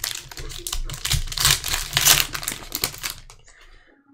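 A trading card pack wrapper being torn open and crinkled by hand: a dense run of crackling that stops a little after three seconds in.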